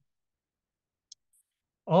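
Near silence broken by a single short, faint click about a second in, like a computer mouse button, followed by a tinier high tick; a man's voice starts speaking near the end.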